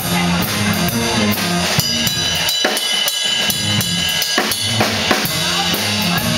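Live jazz band of electric guitar, piano, bass and drum kit playing. About two seconds in the bass drops away, leaving drums and cymbals under held higher notes, and the full band comes back in near the end.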